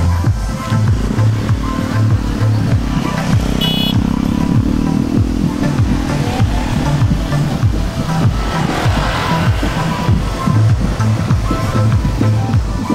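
Music with a steady, heavy bass beat. A vehicle engine swells and fades beneath it in the first half.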